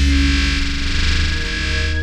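Experimental electronic music: a dense, heavily distorted synthesizer texture over a deep sustained bass, with held tones in between. The distorted layer thins out toward the end.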